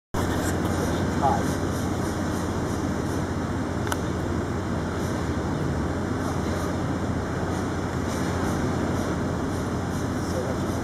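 Steady outdoor city din: a constant low machine hum under indistinct crowd chatter, with a faint click about four seconds in.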